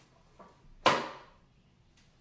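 A single sharp snap about a second in: a balloon stretched over the end of a cup shooter is pulled back and let go, launching a cotton ball.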